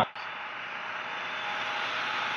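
Steady, even hiss of background noise in a large industrial hall, growing slightly louder, with no distinct knocks or clicks.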